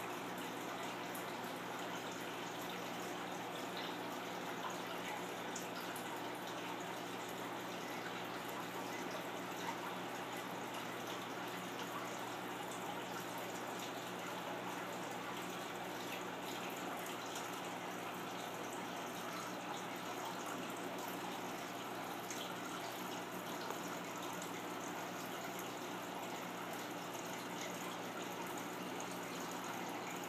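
Steady hiss with a faint low hum underneath, unchanging throughout.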